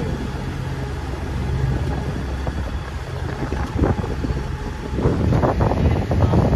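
Wind buffeting the microphone and rushing water on the deck of a sailing catamaran under way, over a steady low hum. The wind gets louder and gustier about five seconds in.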